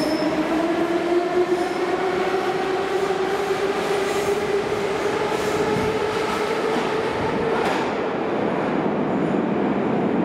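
81-717/714 'Nomernoy' metro train accelerating away from the platform: its traction motors whine, rising steadily in pitch, over the running noise of the wheels on the rails. The whine ends about eight seconds in as the last car enters the tunnel, and the train's rumble carries on from the tunnel.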